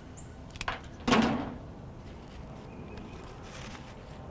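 Light rustling and small clicks of leafy, berry-laden stems being handled and pushed into a flower arrangement, with one louder short rustle about a second in.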